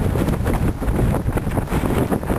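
Wind buffeting the camera's microphone: a loud, uneven low rumble that flutters from moment to moment.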